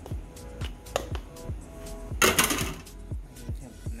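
Background hip-hop music with a deep, pitch-dropping bass beat. About two seconds in there is a short, loud noisy rush.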